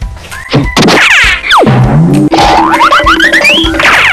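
Cartoon comedy sound effects laid over children's background music: a long falling glide in pitch about a second in, then a quick stepwise rising run of tones near the end.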